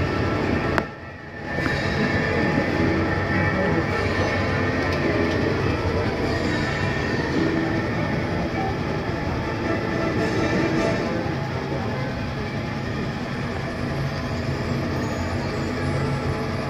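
Monorail train running steadily along its elevated track, a continuous rolling rumble and hum heard from the open car, with music playing over it. The sound briefly drops out about a second in.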